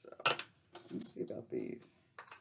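A small clear plastic pot of craft rhinestones being handled and its lid pulled off, with sharp plastic clicks and the gems clinking inside.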